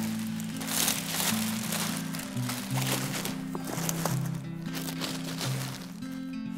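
Background music with steady low notes, over the crinkling and rustling of a large plastic bag as a folded bassinet is worked into it. The rustling comes in irregular bursts, heaviest in the first few seconds.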